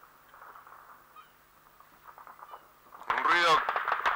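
Anti-aircraft guns firing: after a few faint seconds, a sudden loud burst of shots breaks out about three seconds in.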